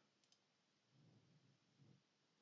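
Near silence, with a faint computer mouse click about a third of a second in.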